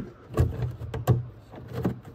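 Irregular plastic knocks and rustles of wiring and connectors being tucked by hand into a headlight housing, over a low steady hum.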